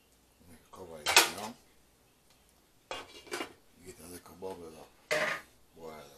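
A spatula clanks and scrapes in a frying pan of curry shrimp as the sauce is stirred, in a few separate bursts. About five seconds in, a glass pan lid clatters as it is set down on the pan.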